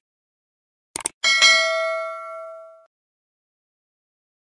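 Subscribe-button sound effects: a quick double click of a mouse button about a second in, then a bright bell ding with several ringing tones that fades out over about a second and a half.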